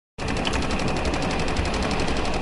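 Small Keppe Motor pulsed electric motor running steadily, with a fast, even rattle of about twenty pulses a second.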